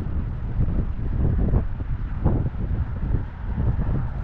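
Wind buffeting the camera microphone: a low, gusting rumble that rises and falls.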